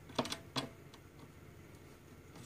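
A few short clicks within the first second from a flathead screwdriver working the release screw on a hard drive's metal caddy as it is loosened.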